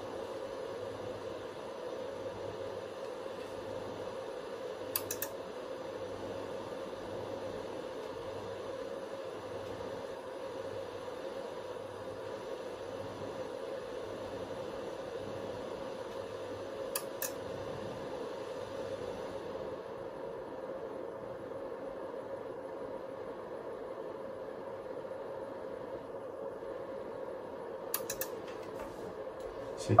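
Steady low hiss and hum of a radio transceiver's receiver while listening between calls, broken by three brief sharp clicks spread through the stretch.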